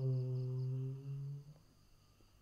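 A woman's calm voice guiding breath meditation draws out the last syllable of a word into a long, steady hum that ends about a second and a half in.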